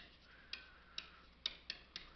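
Faint, irregular ticks of a stylus tip tapping a pen tablet while handwriting: four light clicks over low hiss.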